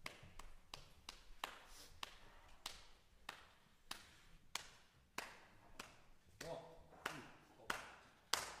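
Faint, sharp clicks at a steady pulse, about three every two seconds, counting off the tempo for a jazz big band about to play.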